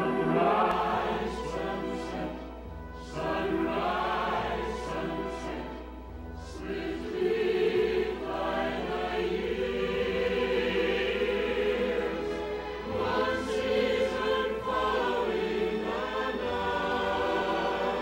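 Choral music: a choir singing, with long held notes through the middle.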